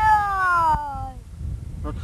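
A young child's single high, drawn-out vocal call that falls steadily in pitch over about a second, over a low rumble.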